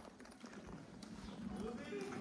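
Indistinct voices talking in the background, with a few footsteps on stone paving.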